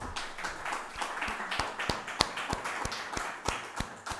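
Small audience applauding, with single hand claps standing out sharply over the general clapping.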